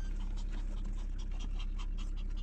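A small Pomeranian dog panting in a car cabin, over the car's steady low rumble.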